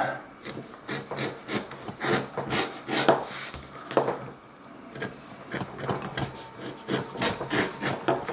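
Edge beveler shaving the edge of 3 mm vegetable-tanned leather: a run of short scraping strokes, roughly one or two a second, as thin curls of leather are cut off the edge.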